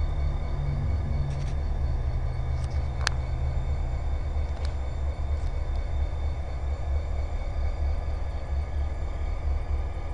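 Idling EMD SD40-2 diesel locomotives, their 16-cylinder two-stroke engines making a steady low rumble. A low hum sits over the rumble and fades out after about four seconds. There is a single sharp click about three seconds in.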